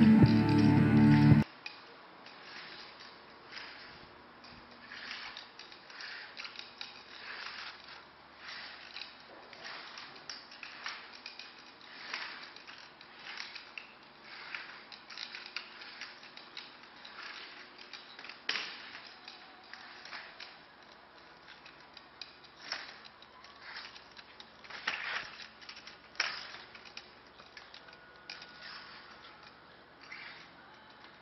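Rock music cuts off about a second and a half in. After that come faint, irregular metallic clicks, taps and shuffles of slow walking with a wheeled aluminium walker while wearing a reciprocating gait orthosis leg brace, with a few sharper clacks in the second half.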